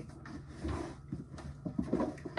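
Small objects being handled on a counter: a few faint clicks and knocks with light rustling.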